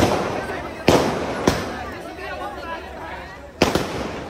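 Firecrackers going off: several sharp bangs at uneven intervals, each ringing out briefly, over the chatter and shouts of a crowd.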